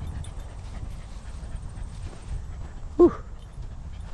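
Cocker spaniel giving one short whimper about three seconds in, dropping sharply in pitch, over a steady low background rumble.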